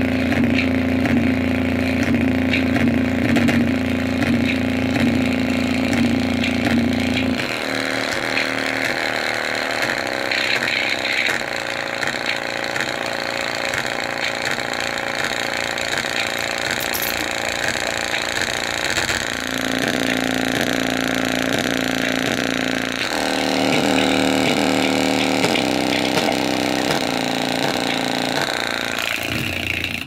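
A small square speaker driver overdriven with heavy bass, buzzing and distorting harshly as it is pushed toward blowing out. The low pulsing pattern changes several times, about 7 s in and again around 19 and 23 s.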